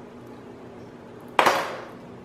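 A metal spoon clattering against a plastic supplement tub: one sudden clatter about a second and a half in that dies away within half a second.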